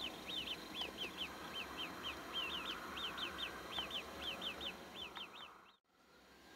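A small bird chirping over and over in quick groups of two or three high notes, about three groups a second, over faint outdoor background noise; the sound fades out near the end.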